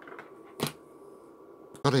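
Low room noise with one sharp click a little over half a second in, and a fainter click just before a man starts to speak near the end.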